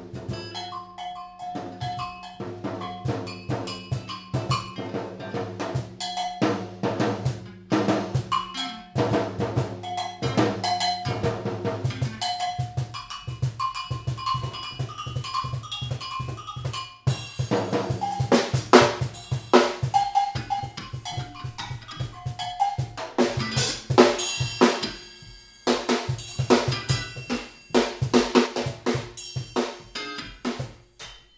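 Live drum kit played in a busy instrumental passage, snare, bass drum, rimshots and cymbals, over sustained electric guitar notes. The drumming grows louder and denser about halfway through.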